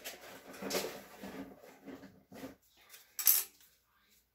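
Rummaging through supplies for stir sticks, with a sharp clatter about three seconds in.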